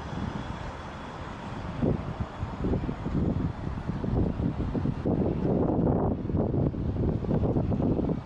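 City street traffic with a car driving past close by, and an uneven, gusty low rumble on the microphone that grows louder about two seconds in.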